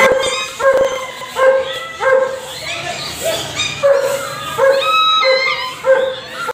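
Dogs barking and yipping over and over, about nine short, high-pitched calls in quick succession.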